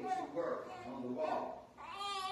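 Speech: a woman reading aloud, some syllables drawn out and gliding in pitch.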